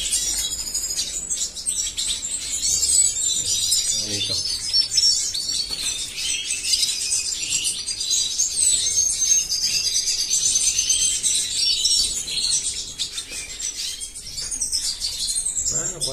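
Small cage finches in an aviary chirping and twittering continuously, with many high, short calls overlapping.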